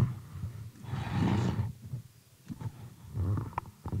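Handling noise on a table microphone: a few sharp knocks and low thumps, with a short rustling rush about a second in.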